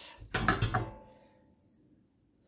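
Gas hob control knob being turned to light the burner under a pan, a few quick light clicks and knocks in the first second.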